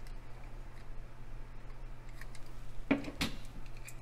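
Faint small clicks of die-cast toy cars being handled and turned over in the fingers, over a steady low hum; a single short spoken word about three seconds in.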